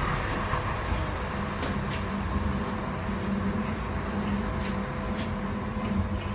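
Interior running noise of a Siemens U2 light rail car: a steady rumble with a steady hum, and a few light clicks or rattles scattered through it.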